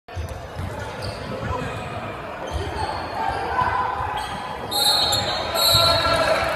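Basketballs bouncing on a hardwood gym floor, with irregular dull thumps that echo in the hall, over a background of voices chatting.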